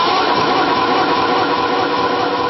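A man's voice holding a long, steady sung note through a loud public-address system.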